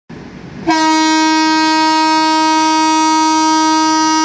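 A train horn sounding one long, steady, single note that starts abruptly a little under a second in.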